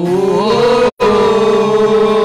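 A solo voice singing one long note of a worship song, sliding up in pitch and then holding it steady. The sound cuts out completely for an instant just before a second in.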